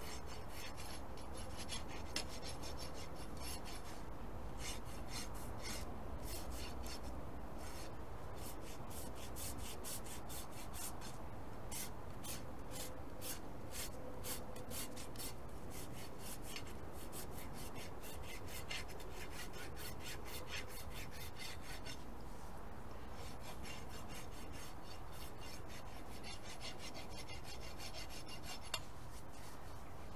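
Steel hoof rasp drawn in repeated strokes across a horse's hoof wall. The strokes file away split, crumbly edges of a brittle hoof. They come in runs, with a short break about three-quarters of the way through.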